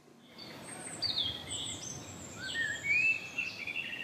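Birds calling and singing over a steady outdoor background noise, beginning about a third of a second in, with many short whistled notes that slide up and down in pitch.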